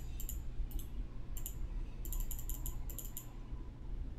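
Faint clicking from a computer mouse and keyboard, with a few scattered clicks and then a quick run of about six clicks around two seconds in, over a steady low hum.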